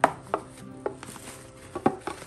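A few short, sharp taps and knocks as a fabric bucket hat is handled over its cardboard gift box and tissue paper; the loudest is a quick double knock near the end.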